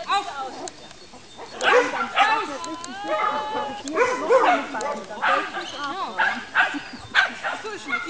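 A dog barking and yipping in quick repeated short bursts, starting about a second and a half in.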